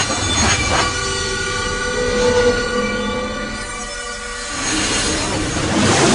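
A steady mechanical rumble overlaid with several high held tones, swelling louder near the end and then beginning to fade out.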